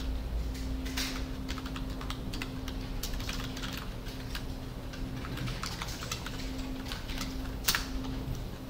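Typing on a computer keyboard: irregular runs of keystrokes, with one sharper, louder key strike near the end. A steady low hum runs underneath.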